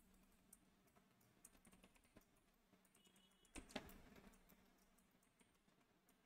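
Faint computer keyboard typing: scattered soft key clicks in near silence, two of them a little louder about three and a half seconds in.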